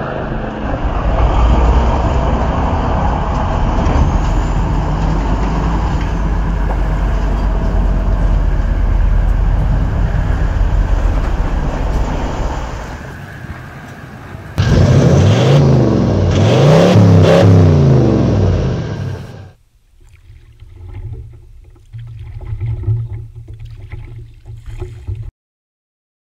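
Off-road vehicle engine under load, loud and heavy in the bass, for about 13 s. After a brief dip it revs up and down several times, then drops away to a much quieter sound about 20 s in.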